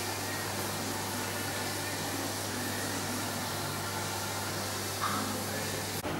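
Steady low hum with an even hiss, the room tone of a small tiled room, with a brief higher-pitched sound about five seconds in.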